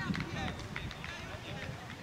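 Children's high-pitched shouts and calls during a youth football game, several short cries bunched near the start.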